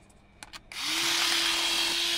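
Cordless electric rotary scissors running, its small motor giving a steady whir as the rotary blade cuts through a sheet of paper. It starts a little under a second in, after a couple of light clicks.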